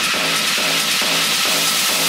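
Dark techno track: a kick drum on every beat, a little over two a second, under a loud hissing noise wash and a steady high tone.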